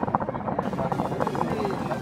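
Nargilem NPS Classic hookah bubbling steadily as smoke is drawn through its water base: a fast, even run of bubbling that starts abruptly.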